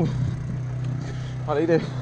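An engine running at a steady low hum, its pitch unchanging.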